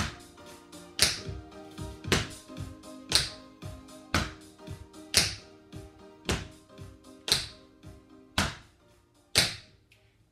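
Tap shoes striking a hard floor over background music, a sharp tap about once a second with lighter taps in between, the steady stepping of tap heel steps.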